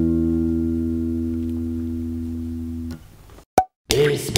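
Electric bass sustaining a single low E, fretted on the D string, ringing and slowly decaying before it is damped about three seconds in. A brief click follows.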